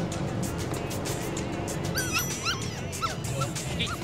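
A run of about six short, high, arching yelps, like a small dog's, starting about halfway through, over music and a steady low rumble.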